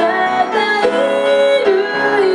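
A woman singing a slow melody in a small room, accompanying herself on an upright piano, with one note held for most of a second partway through.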